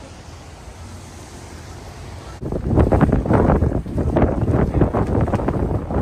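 Steady low rush of the flooded Potomac River running high. About two and a half seconds in it gives way abruptly to loud, gusty wind buffeting the microphone.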